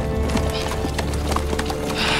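Horse hooves clopping at a walk on a dirt track, a series of uneven hoofbeats, over background music with a long held tone.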